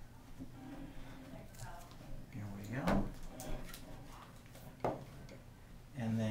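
Faint talk in the background with two small knocks from hands working a ukulele's nut and string at the headstock.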